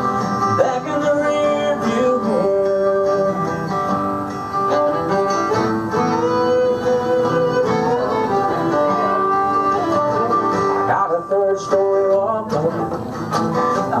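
Acoustic guitar strummed with a fiddle playing the lead melody, an instrumental break in a live country song.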